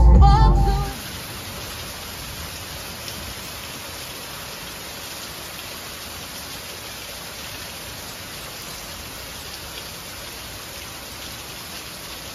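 Steady rain falling on foliage and pavement, an even hiss. Background music stops about a second in.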